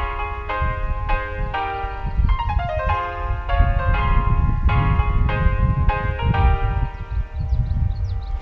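Background music: a melody of sustained pitched notes or chords changing about twice a second, with a quick falling run of notes about a third of the way in, over a steady low rumble.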